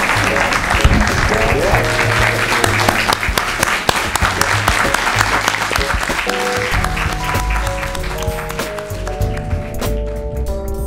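Audience applauding at the end of a talk, thinning out over the last couple of seconds, while instrumental outro music plays.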